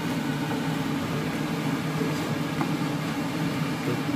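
Prawns simmering in banana sauce in a frying pan on a gas burner: a steady sizzling hiss over a continuous low hum, with a couple of faint ticks from the wooden spatula.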